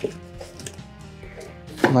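Quiet background music with steady held notes, under a few light taps and rustles from packaging being handled: a foam box and a foil thermal bag.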